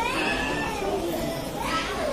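Indistinct talking of several people, with children's high voices calling out near the start and again near the end.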